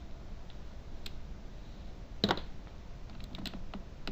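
Scattered clicks of a computer keyboard and mouse: single clicks with the loudest about two seconds in, then a quick run of several near the end, over a low steady hum of room noise.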